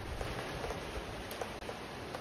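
Steady rain falling: an even hiss with a few faint drop taps.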